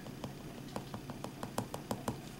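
A string of faint, irregular small clicks or taps, about a dozen, coming closer together in the second second, over a low steady background hum.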